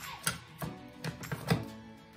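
Hard plastic graded-card slab clicking and tapping as it is handled, about five short clicks, over faint background music.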